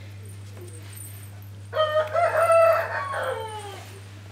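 A rooster crowing once, starting a little under two seconds in: one pitched call of about two seconds that drops in pitch as it trails off.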